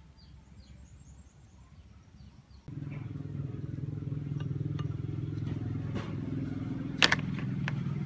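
Quiet at first, then about a third of the way in a steady low motor hum starts suddenly and runs on evenly. A single sharp click comes near the end.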